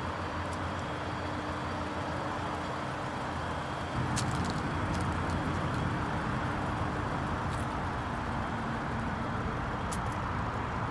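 Honda S2000's 2.0-litre four-cylinder engine idling steadily, a little louder about four seconds in, with a few faint clicks.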